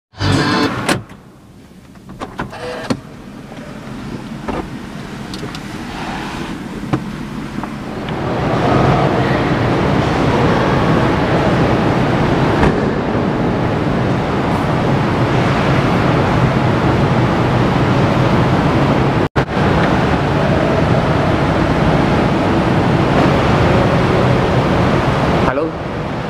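A Toyota sedan's engine started with the push-button starter: a short loud burst at the start, a few light clicks, then a steady running noise from about eight seconds in.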